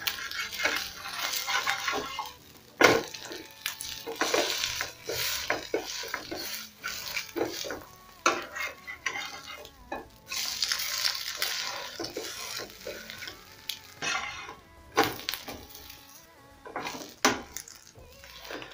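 Slotted metal spatula scraping and clinking against a metal frying pan as a fried egg is loosened and turned, with the egg sizzling in the oil. There is a sharp knock of the spatula on the pan about three seconds in.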